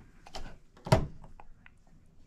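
A few light clicks and one sharper knock just before a second in, as meter test probes are handled and pushed into the slots of a wall outlet.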